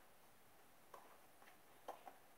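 Near silence broken by a few faint, sharp ticks: one about a second in, a weaker one half a second later, and a louder double tick near the end.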